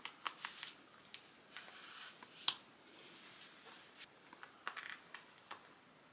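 Soft rustling of fabric and scattered small clicks as a lace-up corset is fastened at its metal front closure, with one sharper click about two and a half seconds in.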